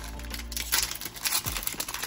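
Foil trading-card pack wrappers crinkling as hands peel back a torn wrapper and pick up the next pack, in irregular crackles that are strongest past the middle.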